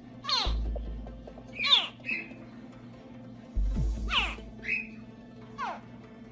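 Crocodile hatchlings calling from the nest: several short chirps that slide steeply down in pitch, a second or so apart. Background music with low bass notes plays underneath.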